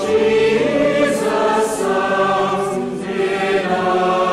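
A choir singing slow, held notes in several parts at once, the pitch moving in steps from one note to the next.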